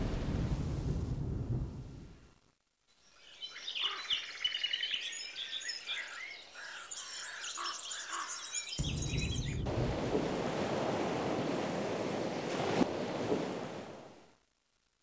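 A loud rushing noise fading away, then, after a brief silence, birds chirping for about six seconds. Near the end a steady rushing noise comes in and cuts off suddenly.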